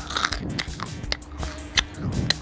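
Close-miked chewing of crunchy snacks: a run of sharp crunches and crackles from the mouth, with the loudest crack near the end.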